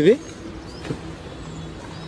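A man finishes a short phrase at the start, then a steady low hum of street traffic, with one sharp click about a second in.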